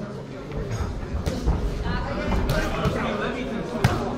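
Voices and shouts echoing around a hall, with a few sharp thuds from the boxers' exchange, the loudest just before the end.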